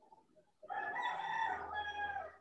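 A rooster crowing once: a single call of about a second and a half, its pitch dropping a little at the end.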